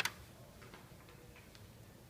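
Drafting tools, a plastic triangle and a mechanical pencil, handled on the drawing sheet: one sharp click at the start, then a few faint ticks.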